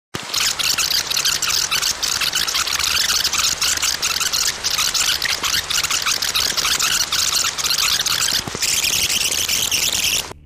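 Video-editing rewind sound effect: a dense, crackling hiss full of rapid clicks, sitting high in pitch. It starts and stops abruptly.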